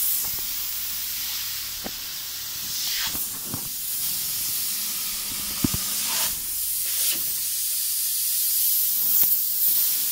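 Spray-foam gun hissing as polyurethane insulation foam is sprayed into a wall cavity: a steady high hiss that swells in several short surges, with a sharp click about five and a half seconds in.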